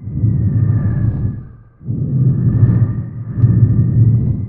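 Logo-animation sound effect: deep rumbling whooshes that swell and fade, a new one about every two seconds, with faint steady high tones held above them.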